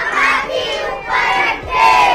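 A group of young children shouting together, many voices at once in a loud cheer.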